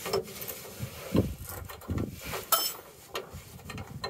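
Scattered metal clinks and knocks as a nut and wrench are worked onto a spring brake caging bolt whose threads are bunged up, so the nut won't spin on freely. There is a sharp metallic click about halfway through.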